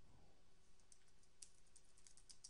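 Faint computer keyboard typing: a quick run of key clicks that starts about a second in.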